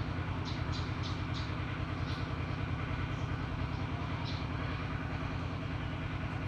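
An engine running steadily, a low hum with a fast even pulse. A few faint high ticks come in the first second and a half.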